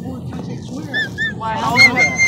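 A high-pitched voice: two short squeaks about a second in, then a longer, louder wavering squeal near the end.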